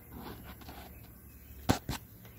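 Two sharp metal clicks about a fifth of a second apart near the end, from the Ford 8N hydraulic lift unit's linkage being raised by hand, over a faint rustle of handling.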